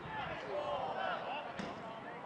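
Players shouting during a goalmouth scramble on a football pitch, with one sharp thud of the ball being struck about one and a half seconds in.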